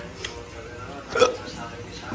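Low conversation in a room, with one short, loud vocal sound from a person a little over a second in.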